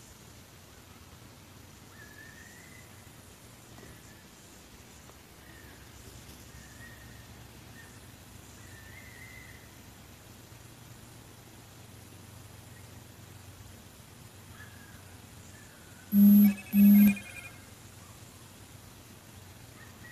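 Faint, wavering high-pitched screeching cries, likened to a child crying, recur every few seconds in a night-time recording of the woods. About sixteen seconds in, two loud short beeps sound half a second apart.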